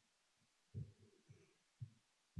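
Near silence broken by three faint, short low thumps about half a second apart, starting near the middle.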